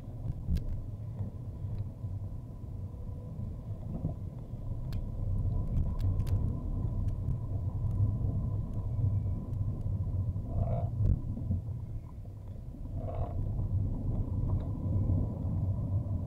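Low, steady rumble of a car driving slowly, heard from inside the cabin, with a few faint ticks.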